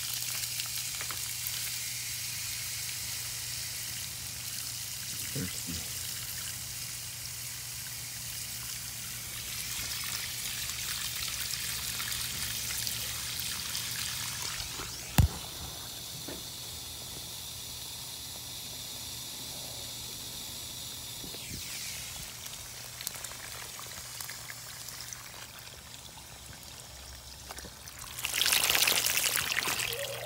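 Water from a garden hose running steadily into a potted palm's flooded soil and trickling out of the pot, with a single sharp click about halfway through. The water sound grows louder for a couple of seconds near the end.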